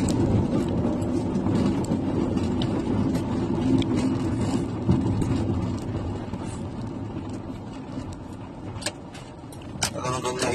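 Car driving, heard from inside the cabin: a steady low hum of engine and road noise that grows quieter about halfway through, with a few faint clicks.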